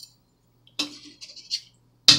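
Icing spatula being picked up and handled, giving a few brief light clinks and scrapes: one a little under a second in, then two quieter ones.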